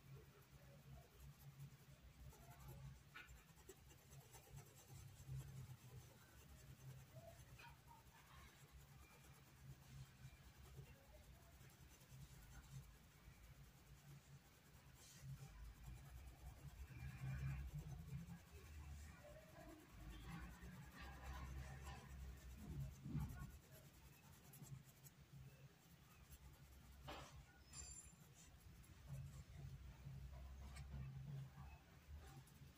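Faint scratchy strokes of a paintbrush dabbing and rubbing paint into cotton fabric, a little busier in the middle, with one sharp tick near the end over a low steady hum.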